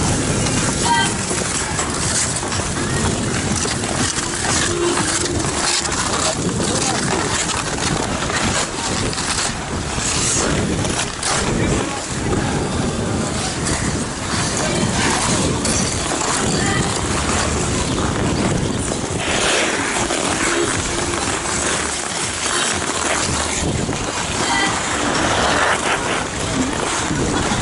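Ice skate blades scraping and gliding over rink ice: a steady, rushing scrape that goes on without a break, with other skaters' voices in the background.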